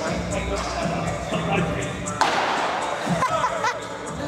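Background music, with a sudden sharp, noisy burst just past halfway that fades within about a second: a hard-thrown fastball striking the catcher's glove. Voices of onlookers follow near the end.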